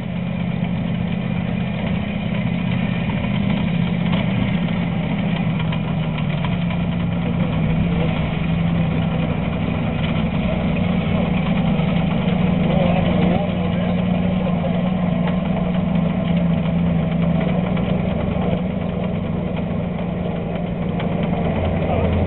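LVT-4 amphibious tractor's Continental seven-cylinder radial engine running steadily as the tracked vehicle drives out of the water and up the bank, getting a little louder in the first few seconds as it comes closer.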